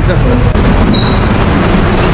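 City bus running, a loud steady rumble of engine and road noise heard from inside the moving bus.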